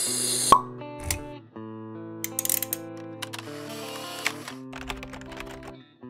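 Animated logo intro sting: held music chords with pop, click and swish sound effects laid over them, a sharp pop about half a second in being the loudest, fading out near the end.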